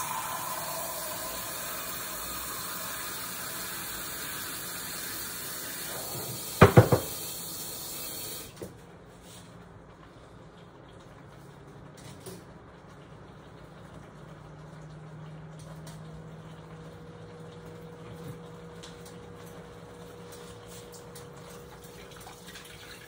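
Water running from a kitchen tap into a container for about eight seconds, then cut off, with two sharp knocks shortly before it stops; afterwards only a faint steady hum.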